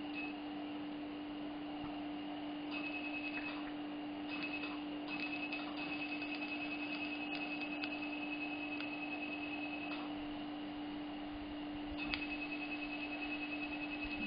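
Dental laser unit giving its high, rapid pulsed beep in several stretches, the longest about four seconds, as the laser fires on gum tissue. The beep is the audible warning that the laser is emitting. A steady low hum runs underneath.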